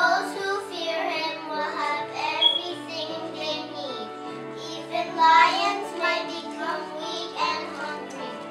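Children singing a song with sustained instrumental accompaniment.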